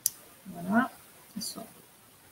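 A sharp click at the very start, then two brief vocal sounds from a woman on a video call, the first rising in pitch.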